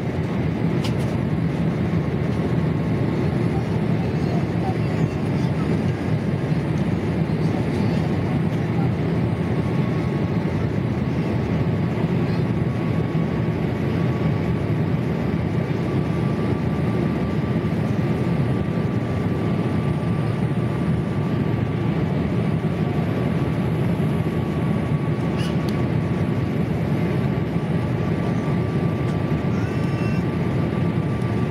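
Steady cabin noise of a Boeing 787 Dreamliner in cruise, heard from inside the cabin: an even, unbroken rush of airflow and its Rolls-Royce Trent 1000 engines, with a faint steady whine above it.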